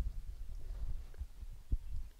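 Low, uneven rumble with a few soft thumps on the microphone, the kind of noise wind or handling makes on an outdoor mic.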